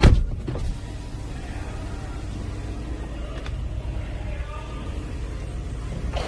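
Volkswagen Jetta TDI diesel engine idling steadily, a low rumble heard from inside the cabin. A sharp thump comes right at the start.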